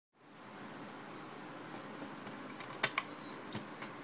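Faint cassette tape hiss from the blank start of a tape playing back, with a few scattered small clicks and two louder ones close together about three seconds in.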